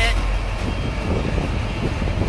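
Intermodal freight train of double-stacked shipping container cars rolling past, a steady low rumble.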